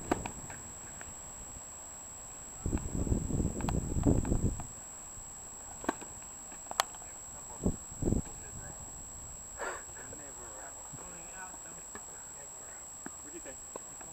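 Tennis rally: the pop of a racket striking the ball on a serve at the start, then a few more sharp ball strikes spaced a second or two apart, and a couple of dull thumps of the ball or feet on the hard court. About three seconds in, a low rumble on the microphone lasts for about two seconds.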